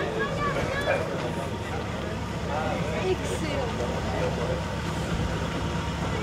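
A car engine idling steadily, with people talking nearby.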